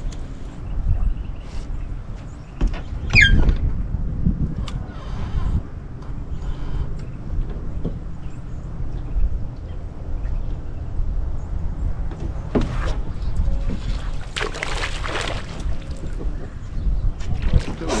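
Wind buffeting the microphone with a steady low rumble while a bass angler handles his rod and reel, with scattered clicks and a brief falling whistle about three seconds in. About fourteen seconds in comes a splashing burst as a hooked bass thrashes at the surface before it is swung out of the water.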